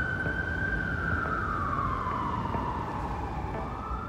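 An emergency vehicle siren wailing: its pitch holds high, falls slowly over a couple of seconds, then rises again near the end, over a low rumble.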